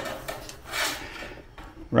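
A rain gutter being handled and set against a wooden fence post: a click, then a short rasping scrape about a second in.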